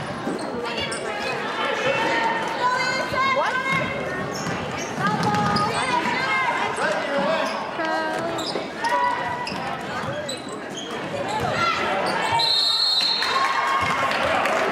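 Basketball game sounds in an echoing gym: the ball bouncing on the hardwood, sneakers squeaking, and players and crowd calling out. A short shrill referee's whistle near the end.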